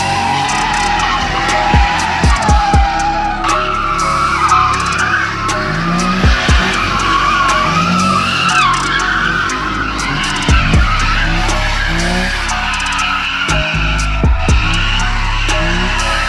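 Car tyres squealing in a long, wavering screech as a car spins donuts on pavement, over loud music with a heavy drum beat.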